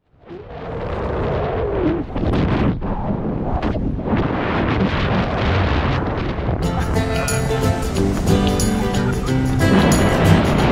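Wind rushing loudly over a body-mounted camera's microphone during a tandem skydive, cut in suddenly. Background music comes in about two-thirds of the way through.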